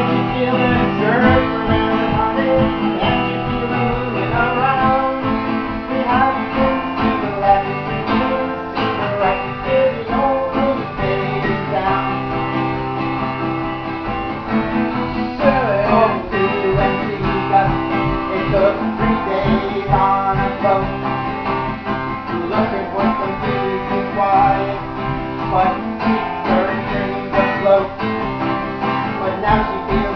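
Acoustic guitar played continuously as song accompaniment, chords ringing on without a break.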